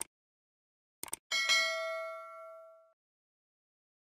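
Subscribe-button sound effects: a short mouse click, then a quick double click about a second in, followed by a bright notification-bell ding that rings out for about a second and a half.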